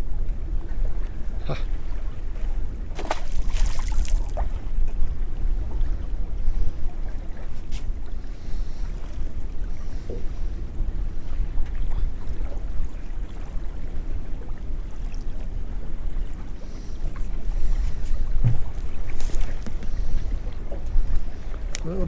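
Wind buffeting the microphone on an open boat at sea, a steady low rumble, with a few short clicks and rustles from handling fishing line and tackle.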